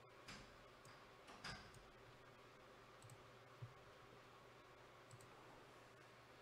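Near silence: faint room tone with a handful of soft, scattered clicks.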